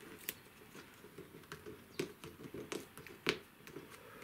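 Masking tape being peeled slowly off cartridge paper, giving faint, irregular crackles and ticks, the loudest a little after three seconds in.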